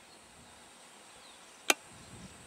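A single sharp click about three-quarters of the way through, over a faint, steady outdoor background.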